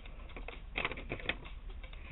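A sheet of paper rustling and crackling as it is handled and unfolded by hand, with a cluster of crisp crackles a little under a second in and another a moment later.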